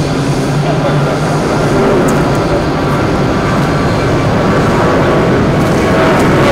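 Jet airliner's engines giving a steady loud rumble as it climbs out after takeoff.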